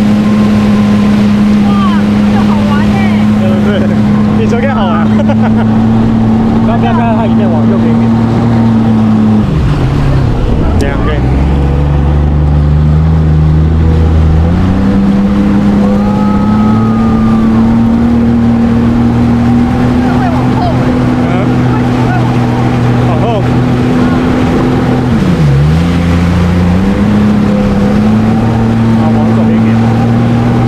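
Jet ski engine running at steady throttle. About a third of the way in the throttle is eased off and the engine note drops. It is opened up again a few seconds later, with one more brief dip in revs near the end.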